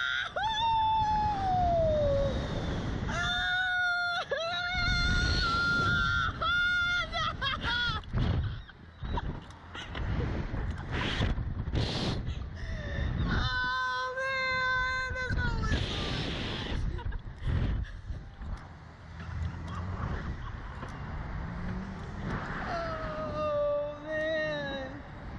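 Screams and laughing yells from riders just launched on a slingshot reverse-bungee ride. A falling shriek comes at the start, long high screams follow a few seconds in and again midway, and another comes near the end. Wind rushes over the ride-mounted microphone throughout.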